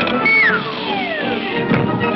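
Orchestral cartoon score with many held instrument notes. One long note slides steeply downward in the first second.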